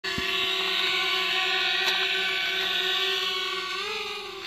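Quadcopter drone's propellers and motors whining steadily in flight, the pitch rising slightly near the end.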